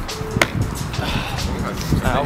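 A sharp impact about half a second in, trainers landing on the stone coping of a brick wall, with a fainter knock near the end.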